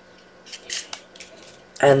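Cardstock being handled: a few short papery rustles and scrapes as a paper belly band is slid down a folded card and the card is picked up.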